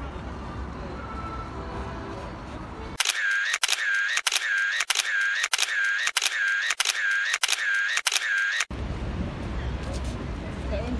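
Camera shutter sound effect repeated about nine times in a quick, even series, starting about three seconds in and stopping abruptly near the end, laid over a still-photo montage. Before and after it there is outdoor background noise with faint voices.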